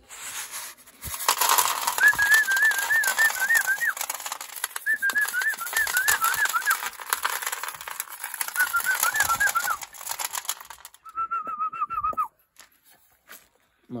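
A person whistles a warbling call in three phrases over the loud rattle of dried corn and grain being poured from a plastic bowl into a wooden feeder trough, the way a pigeon keeper calls the birds to feed. Then the rattle stops and a shorter, lower whistle follows.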